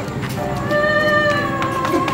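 A high voice singing one long held note, drifting slightly down in pitch, as part of a devotional serenade hymn.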